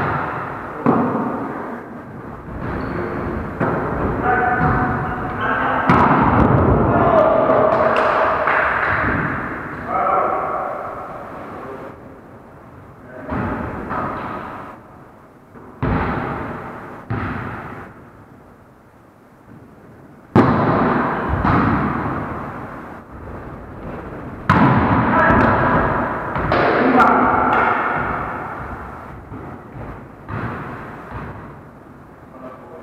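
Volleyball play: several sharp hits of the ball by hands and on the wooden floor, each ringing out in the hall, with players' voices calling out between and over them.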